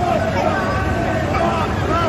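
Several men shouting over one another, too garbled to make out, over a steady low background rumble.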